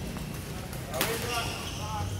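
A badminton racket strikes a shuttlecock once, sharply, about a second in, over a steady low hum.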